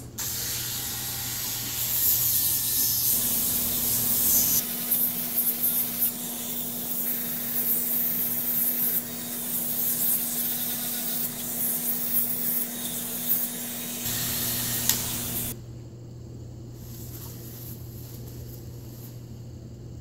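Corded Dremel rotary tool grinding a blue-and-gold macaw's claws: a steady motor whine under gritty sanding noise. The whine stops a few seconds before the end, leaving a quieter stretch.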